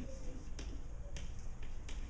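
Chalk clicking against a chalkboard as someone writes: a few sharp taps roughly half a second apart, over a low room hum.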